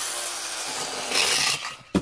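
Plastic spinning-top toy whirring steadily in its launcher as it is spun up. It ends with a few sharp clacks near the end.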